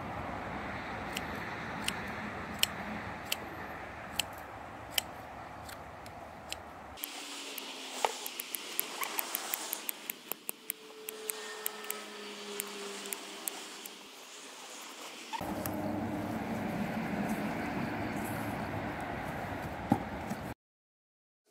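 Scissors snipping through dried moss, a sharp click with each cut: spaced snips first, then a quick run of many snips in the middle. A steady background hiss runs under it.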